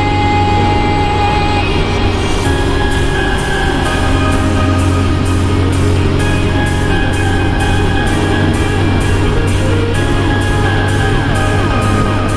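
Background music with a steady beat that comes in about two seconds in.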